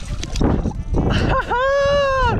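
A hooked rainbow trout splashing at the water's surface, then, about one and a half seconds in, a man's long, high-pitched excited yell that rises, holds and falls away as the fish is landed.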